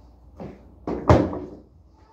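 A hard plastic children's ride-on toy being set down and knocking, with two knocks: a light one, then a louder clattering one about a second in.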